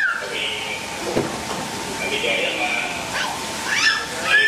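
A crowd of party guests talking and calling out over one another, with some high-pitched voices.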